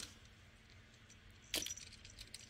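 Brief light metallic jingles as a cat bats at a wand toy, one at the start and a louder one about a second and a half in, each with a short tinkling ring.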